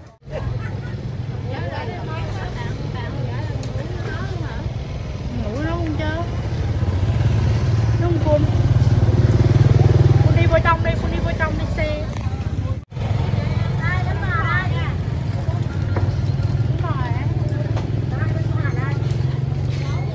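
Motorbike engines running in a busy street market, one louder as it passes close about nine to eleven seconds in, under the scattered voices of people nearby.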